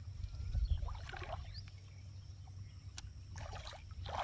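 Shallow water splashing and sloshing as someone wades and handles things in it. There are short bursts about a second in and again near the end, when a pot is set down in the water.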